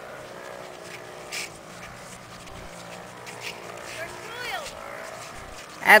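Faint voices of children outdoors, with a short high-pitched call about four and a half seconds in, then a loud voice starting right at the end.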